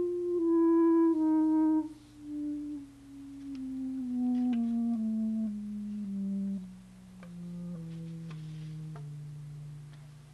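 Clarinet playing a slow scale that steps down note by note, about fifteen notes, from the middle register to the bottom of its low register. The first few notes are loud, then the rest are held much softer: a demonstration of 'whispering' the low notes.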